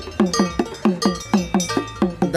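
Quick, even percussion beat, about six strikes a second, each stroke dropping slightly in pitch with a metallic ring above it: folk drum and bell rhythm.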